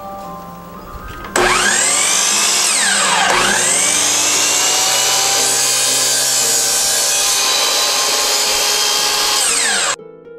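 Electric miter saw switched on about a second in, its motor whining up to speed and running steadily while the blade cuts a thin oak strip at an 8-degree angle. The pitch dips and recovers once early in the run and starts to fall just at the end. Soft background music plays before the motor starts.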